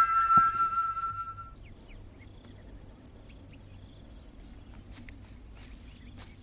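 The last notes of a flute melody in the background score, with a couple of soft knocks, fade out about a second and a half in. After that, insects chirp faintly in a steady high trill with scattered short chirps.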